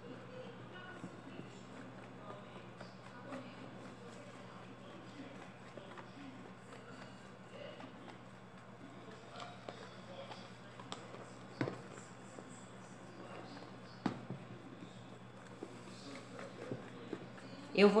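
Wooden spoon stirring a foaming mixture in a plastic tub, with light scrapes and scattered knocks against the tub's sides, two of them sharper about two-thirds of the way through. A steady low hum runs underneath.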